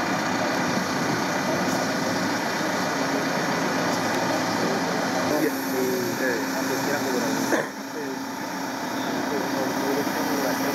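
Caterpillar backhoe loader's diesel engine running steadily, with people talking in the background. The sound shifts abruptly about three-quarters of the way through.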